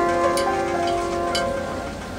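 Piano intro chords sustained and fading away, with a few faint clicks over the ringing tones.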